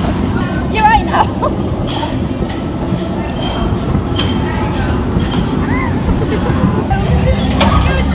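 Bumper cars running in the arena: a steady low rumble of the cars moving over the metal floor, with a few sharp knocks.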